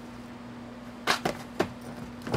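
A cat pouncing and landing on furniture: three quick thumps and scuffs within about half a second, starting about a second in.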